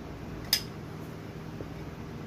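Steady hum of a running fan, with one sharp click about half a second in.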